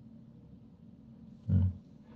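Faint room tone, broken about one and a half seconds in by a single brief, low voiced sound from a man, lasting about a quarter of a second.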